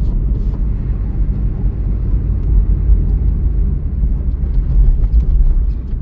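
Chevrolet Celta's 1.0-litre four-cylinder engine pulling under a light press of the throttle, heard from inside the cabin as a steady low rumble mixed with road noise.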